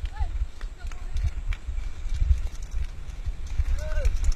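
Mountain bike rattling and clattering down a rough dirt trail, with heavy wind buffeting the handlebar-mounted camera's microphone. A brief shout is heard just after the start and again near the end.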